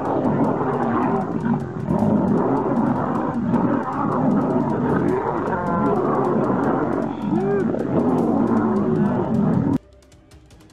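Several lions, lionesses and a male, snarling and growling over one another in a fight, a loud continuous din that cuts off suddenly near the end.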